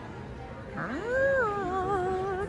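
A woman's drawn-out vocal exclamation of delight, an "aww" that starts about a second in, swoops up in pitch and then is held, wavering, over a background of shop noise.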